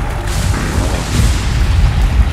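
Deep, continuous rumbling booms under a loud rushing noise that swells twice, with music mixed in.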